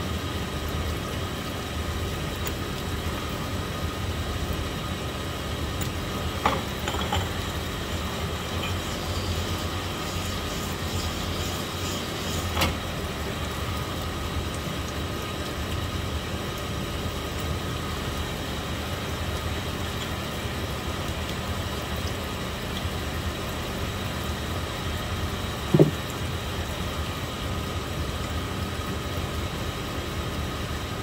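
Piston pin hone running steadily, its motor and spinning honing mandrel humming as a piston's pin bore is worked on the stone to open up a pin fit that was too tight. A few sharp clicks or knocks break in, the loudest near the end.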